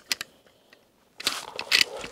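A few light clicks of wooden toy train cars knocking together on wooden track, then, after a short lull, about a second of rustling and scuffing from the camera being handled close to the microphone.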